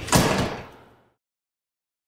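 A frosted-glass door shutting: one sharp bang right at the start that rings out and fades within about a second.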